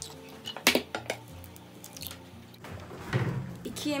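An egg cracked on a glass mixing bowl: one sharp crack about a second in, followed by a few lighter taps and clicks of shell and glass, then brief handling noise near the end.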